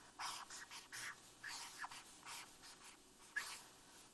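Marker writing on a flip-chart pad: a run of short scratchy strokes with small gaps between them, stopping shortly before the end.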